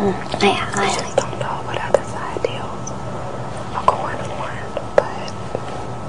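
Quiet, low-voiced talk between two people, close to a whisper, with a few small sharp clicks scattered through it.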